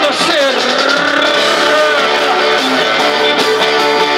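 Live rock band playing with electric guitar and bass, led by a harmonica played cupped into a vocal microphone, holding long notes that bend into pitch.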